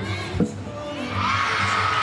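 A gymnast's feet land on a wooden balance beam with a single sharp thud about half a second in, after a back handspring layout. The arena crowd then cheers, swelling about a second in.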